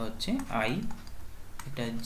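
A few sharp clicks from a computer input device as letters are handwritten on screen, between short spoken letter names.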